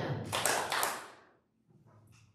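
Rustling noise with a few sharp taps or clicks, stopping after about a second.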